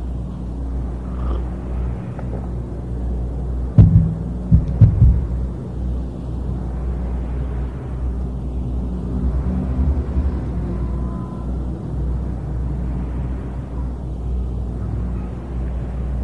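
Steady low hum and rumble, with a few sharp knocks about four to five seconds in.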